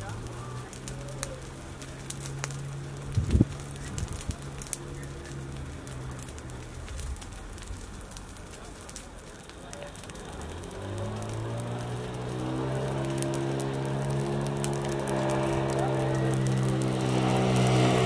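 Dry grass fire crackling with scattered small pops, and one sharp knock about three seconds in. Under it a low machine hum runs, drops out in the middle, then returns with a slight rise in pitch and grows louder towards the end.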